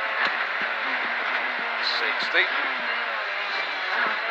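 Proton Satria S2000 rally car's 2-litre four-cylinder engine running hard, heard from inside the cabin over tyre and road noise, with several sharp knocks through the car.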